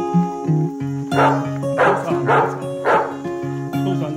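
Background acoustic guitar music, with a dog barking four times in quick succession from about a second in.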